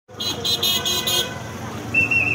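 Vehicle horn beeping rapidly, about five short high toots in quick succession, then stopping.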